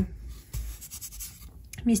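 Faint scratching of fingertips on a bare wooden shelf board between terracotta pots, with a soft bump about a quarter of the way in.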